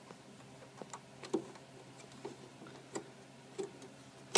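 Light, irregular clicks and taps from fingers working the corner screw and latch plate of a steel RC car trailer deck, about half a dozen over the few seconds, the loudest about a second and a half in.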